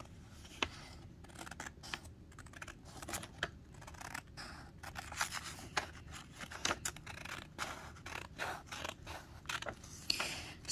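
Scissors cutting printed sublimation transfer paper, a quiet run of short, irregular snips as the excess edge is trimmed away.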